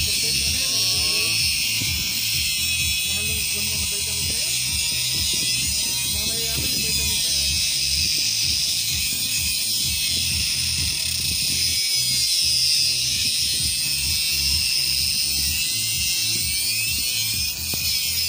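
Small handheld grinder with a cut-off disc grinding into the steel of an upper ball joint on a suspension control arm: a steady, high-pitched grinding hiss that runs on without a break. Background music with a steady low beat plays underneath.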